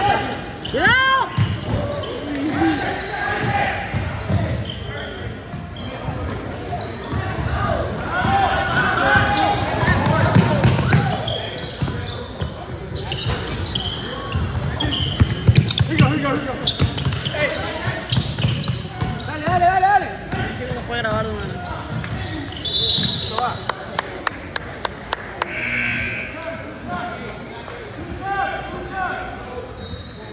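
A basketball bouncing on a hardwood gym floor, with runs of quick dribbles, under indistinct shouting from players and onlookers. It all echoes in a large gymnasium.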